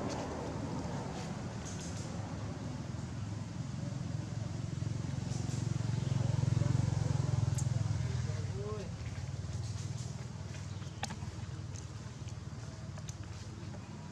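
Faint background voices over a low rumble that swells to its loudest about halfway through and then fades, with a few sharp clicks.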